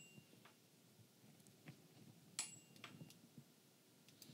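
Near silence: room tone, with a couple of faint short clicks about two and a half seconds in.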